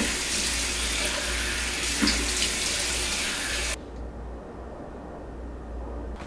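Bathroom sink tap running steadily into the basin, then shut off abruptly a little past halfway, leaving a low hum.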